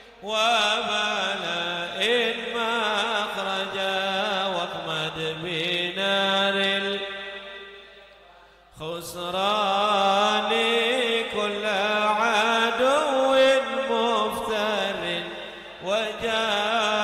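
A man's voice chanting an Arabic munajat (devotional supplication poem) into a microphone, in long, wavering melismatic notes. The chant fades away about eight seconds in and starts again a moment later.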